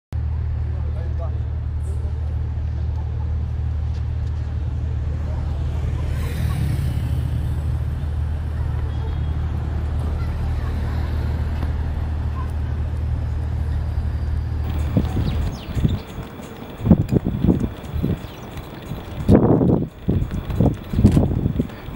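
Steady low rumble of city road traffic. About fifteen seconds in it stops and gives way to a quieter background broken by short, irregular louder sounds, voices among them.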